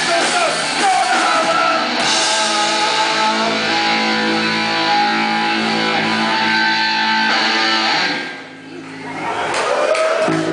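Live punk rock band, with distorted electric guitar, bass and drums, playing the last bars of a song and holding a long ringing chord that dies away about eight seconds in. The sound swells again just before the end.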